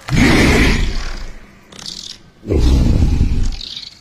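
Film monster roaring twice: a loud, deep roar lasting about a second, then a second one about two and a half seconds in.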